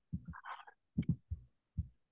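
A run of short, dull low thumps and knocks, about six in two seconds, some in close pairs, with a brief higher-pitched sound about half a second in.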